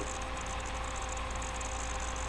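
Steady electrical hum with a few fixed tones and an even hiss over it, unchanging throughout.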